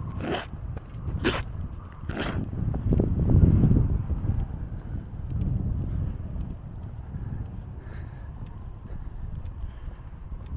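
Loose soil and grit being scraped back against the edge of a tarmac footpath, three short scrapes about a second apart, then footsteps along the path with a low rumble.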